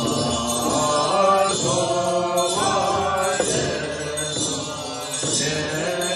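Tibetan Buddhist lamas chanting a ritual liturgy in long, melodic sung tones, with a steady high ringing behind the voices.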